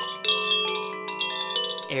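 Koshi chime, a bamboo-cased wind chime with eight tuned metal rods, swung by hand so that its clapper strikes several rods. The notes ring on and overlap, with fresh strikes just after the start and again about a second and a half in.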